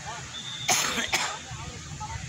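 A person coughing twice close to the microphone, a longer cough followed by a short one, over faint distant voices.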